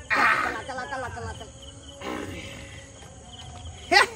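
A man's loud, strained vocal cry with wavering pitch, about a second long, comes right at the start, as if heaving to pedal a loaded cycle rickshaw. A fainter cry follows about two seconds in.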